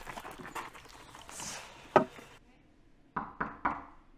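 Outdoor scuffing and movement, a single sharp thump about two seconds in, then, in a quiet room, three quick knocks on a door.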